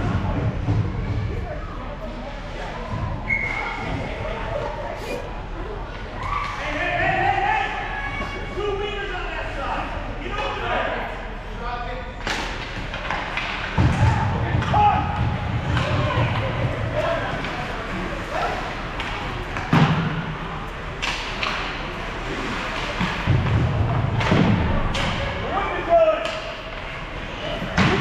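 Ice hockey game sounds echoing in an indoor rink: voices and calls from the stands and bench, with sharp knocks and thuds of sticks and puck against the ice and boards every few seconds.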